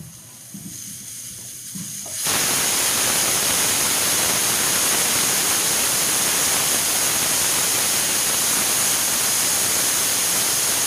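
Stovetop pressure cooker venting steam. A faint hiss builds, then about two seconds in it jumps suddenly to a loud, steady hiss: the cooker has come up to pressure and steam is escaping at the weighted vent.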